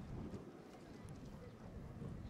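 Faint footsteps knocking on a stage floor over low outdoor background noise.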